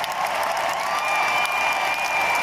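Large arena crowd applauding and cheering, with a long high whistle held over it from about halfway through.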